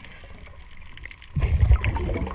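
Underwater: a diver's exhaled air bubbling past the microphone in one loud, rumbling, crackling burst lasting about a second, starting just past the middle, over a steady low underwater hum.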